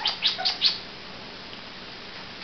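A quick run of about five short, high-pitched chirps in the first second, then quiet.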